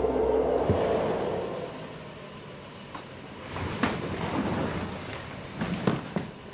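Rushing background noise that is loudest at first and fades over about two seconds, then a quieter hum with a few sharp knocks and clicks, the loudest cluster near the end.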